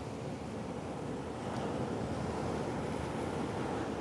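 Ocean surf washing against a rocky shore, a steady rush that swells a little in the middle, with wind on the microphone.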